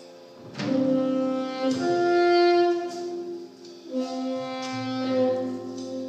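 Saxophone playing a slow melody of long held notes over keyboard chords, with a low bass note coming in about halfway through.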